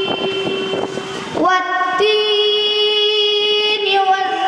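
A boy's voice through a PA microphone, chanting Quran recitation (tilawat) in long melodic held notes. After a short noisy break in roughly the first second and a half, the voice glides up into another long held note.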